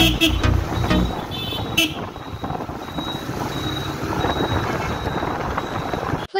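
TVS Apache RTR motorcycle riding along at about 40 km/h, engine and wind noise steady. A few short horn toots come in the first two seconds while background music fades out.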